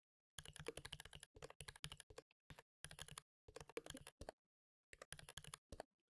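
Faint typing on a computer keyboard: quick runs of keystrokes in several bursts, with short pauses between them.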